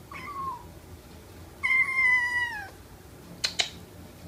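A 3-4-week-old kitten mewing: a short high mew, then a longer mew of about a second that slides down in pitch. A couple of sharp clicks follow near the end.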